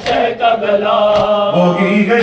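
Male voice chanting a held, slowly stepping line of an Urdu noha (a Shia lament for Karbala). A sharp beat falls about once a second.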